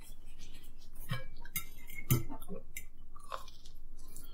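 Chewing and mouth sounds of people eating spaghetti and garlic bread, with scattered light clicks and clinks of a fork on a plate.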